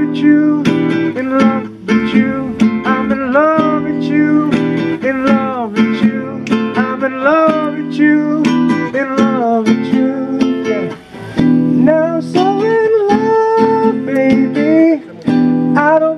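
Live acoustic band music: an acoustic guitar playing, with a lead melody line sliding and bending between notes over it.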